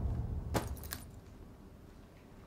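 A deep low rumble fading away, with two short sharp clicks about half a second and just under a second in; after that only faint room sound.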